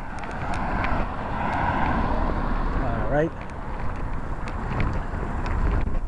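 A car passing on the street, its noise swelling and fading over the first three seconds, over a steady low rumble of wind on the microphone. A brief murmur from a person's voice comes about three seconds in.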